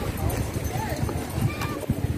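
Indistinct voices in short bursts over a steady low rumble of wind and handling noise on a phone microphone.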